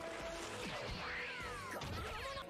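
Anime episode soundtrack playing at low level: background music with a high tone that slides steadily downward about a second in.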